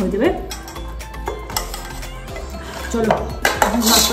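Stainless steel bowl handled on a hard floor: a series of light metallic clinks and scrapes as it is set down and worked in by hand.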